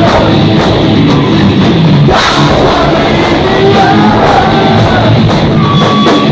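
A heavy rock band playing live and loud: distorted electric guitars and a drum kit, with a singer's voice over them and a loud hit about two seconds in.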